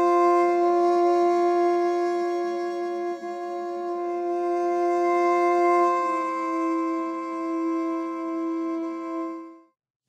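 Sampled solo viola from the Iremia library's sustain patch, played as a held chord on a keyboard, swelling and easing in loudness as the dynamics slider moves. Some of the voices shift to new notes a few times, and the chord fades out just before the end.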